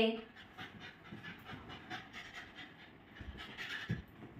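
Beagle puppy panting in quick, even breaths while it plays, with a couple of soft thumps near the end as it jumps up on the sofa.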